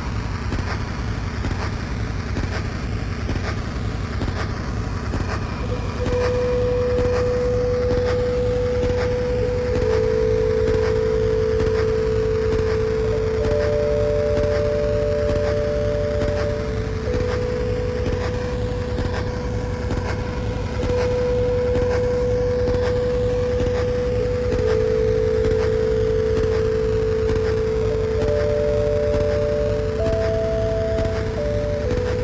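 Dark ambient electronic music: a dense, steady low rumbling drone, with long held synth notes coming in about six seconds in, two or three overlapping at a time, and slow sweeping hiss above.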